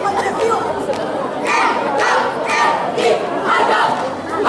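Marching drill squad shouting in unison, with loud rhythmic shouts about twice a second in the second half, over the chatter of a watching crowd.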